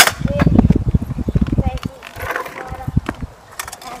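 Stunt scooter wheels rolling on a rough concrete driveway, a rattling low rumble for about two seconds, opened by a sharp clack.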